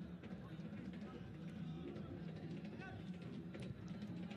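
Pitch-side ambience of a football match in a near-empty stadium: a steady low hum with a faint distant shout from a player about three seconds in.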